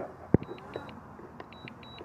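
DJI Mini 3 Pro remote controller sounding its critical-low-battery alarm: short high beeps in pairs, two pairs close together and then a brief pause, repeating, as the drone makes a forced landing. A single sharp click sounds near the start.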